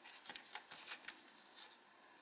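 Origami paper rustling and crackling faintly as it is folded and a crease is pressed in by fingers. The crackles come in a quick string, mostly in the first second.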